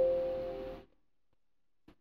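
Windows system alert chime signalling that Revit has raised a warning: a single ding that fades out within about a second.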